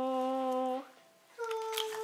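A voice holding a long, steady "oo" note that stops a little under a second in, followed after a short pause by a shorter, higher held note.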